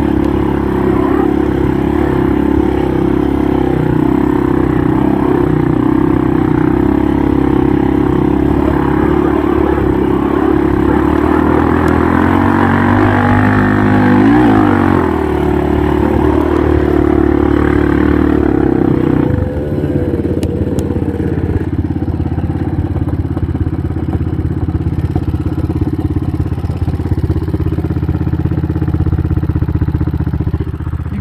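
ATV engine running under load while riding over sand, its pitch rising and falling around the middle as the throttle is worked. About two-thirds of the way in the engine drops to a lower, steady idle-like note.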